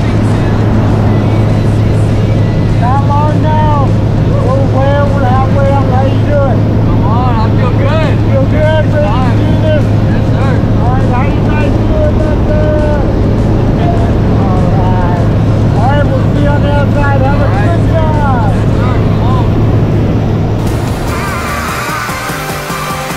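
Turboprop engine of a Cessna Caravan Supervan 900 jump plane droning steadily, heard inside the cabin on the climb, with people's voices calling out over it. The drone fades about a second before the end.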